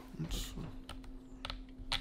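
Handling noise: a short rustle followed by a few light clicks and taps as an aluminium energy-drink can is handled close to the microphone, over a faint steady hum.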